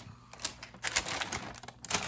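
Handling noise: scattered light clicks and knocks with short bursts of paper rustling as small items are set aside and a kraft paper gift bag is picked up.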